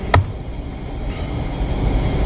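Steady low rumble of lecture-room background noise, with one sharp click a fraction of a second in.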